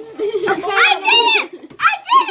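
Children's voices: excited, high-pitched talking and calling out.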